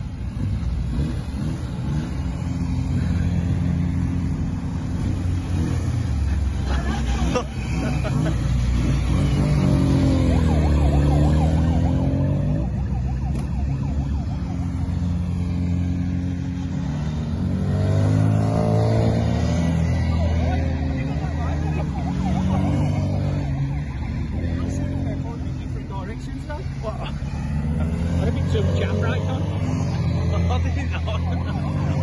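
Classic Mini cars driving past one after another, their small four-cylinder engines running under load with the pitch rising and falling as each goes by. The loudest passes come about a third of the way in, just past the middle and near the end.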